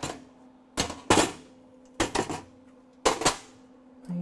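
Locking-pliers clamps being released from the edge of a steel floor pan and set down on the sheet metal: about five sharp metallic clanks, roughly one a second, each ringing briefly.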